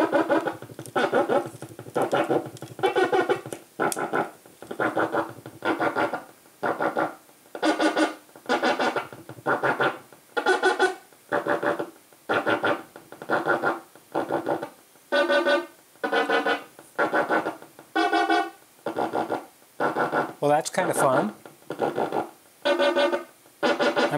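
Eurorack synthesizer voice run through a Zlob Modular Foldiplier wave folder, playing a repeating sequence of short pitched notes at about two a second. Each note's tone changes as the folding is modulated and the knobs are turned.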